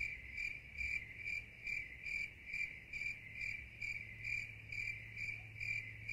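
Cricket chirping sound effect, a steady run of short high chirps a little over two a second over a faint low hum, cutting off abruptly: the stock "crickets" gag for an awkward silence.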